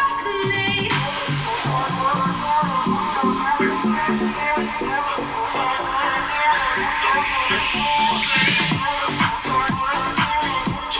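Electronic dance music playing from the Lenovo Yoga Book 9i laptop's built-in speakers at 30% volume in a speaker test, with a regular drum beat coming in near the end.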